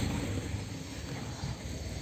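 Steady low rumble with a faint hiss: outdoor background noise, with no distinct event.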